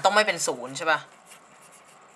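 A man's voice speaking briefly, ending about a second in, then faint scratchy sounds of writing.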